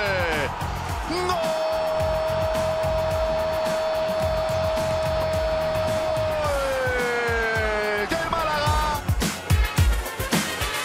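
A football commentator's long drawn-out cry of "gol", held on one pitch for several seconds and then sliding down and trailing off. It runs over backing music with a steady beat, and the music grows busier near the end.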